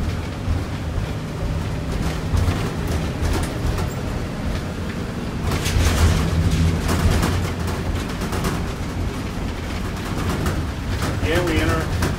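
School bus engine and road noise heard from the driver's seat, a steady low rumble. About halfway through it turns louder and rattly for a second or so as the tyres run over the drawbridge's open steel grate deck.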